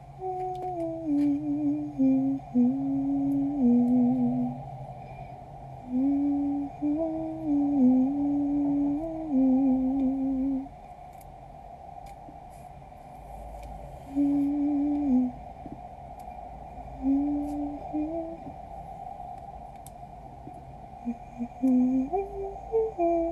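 A person humming a slow tune with closed lips, in short phrases of stepping notes separated by pauses of a few seconds.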